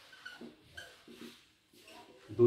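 A whiteboard marker squeaking faintly in several short strokes as it writes on the board.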